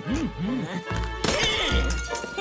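Cartoon soundtrack music with quick bouncing pitch swoops, then a shattering, breaking sound effect about a second and a quarter in.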